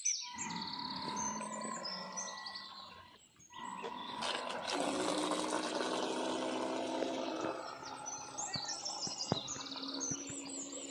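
The small brushed 555 DC motor of a homemade RC boat runs with a steady whine that drops out briefly about three seconds in. It then comes back under a rushing noise as the boat speeds across the water. Birds chirp near the end.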